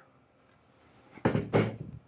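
Wooden stock of a Howard Thunderbolt carbine being slid off its metal tangs and set down on a cloth-covered surface: a single dull knock with a short scrape, a little over a second in.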